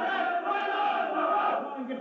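A team of footballers chanting and singing together in loud unison, many voices overlapping, with a brief dip near the end.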